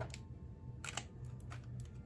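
Faint clicks and taps of a fountain pen and its cap being handled, with one sharper click just under a second in and a few lighter ticks after it.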